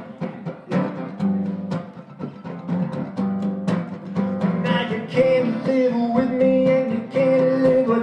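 Live band music: acoustic guitar strummed over regular drum hits in an instrumental passage between sung lines. About five seconds in, a long held melody note with small bends comes in over the beat.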